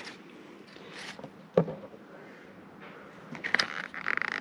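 A hand handling the plastic wiring plug and loom on a throttle body: faint rubbing and scraping, with a sharp click about a second and a half in and a few more clicks near the end.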